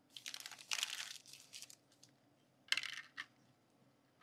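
Packaging wrappers from a Mini Brands capsule crinkling and rustling as they are pulled open by hand. A longer stretch of rustling comes in the first two seconds, then a shorter burst a little before the end.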